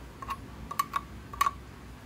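A metal utensil clicking against a plastic drinking tumbler: about five sharp clicks over a second and a half, each with a faint ring.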